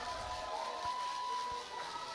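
Faint ambience of an outdoor football pitch with distant voices and cheering from players celebrating a goal; a thin steady tone is held briefly in the middle.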